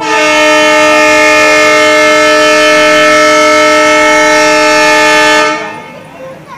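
WDM3D diesel locomotive's air horn sounding one long, loud, steady blast of several notes together, stopping about five and a half seconds in.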